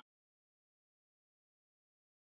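Digital silence: the sound track drops out completely.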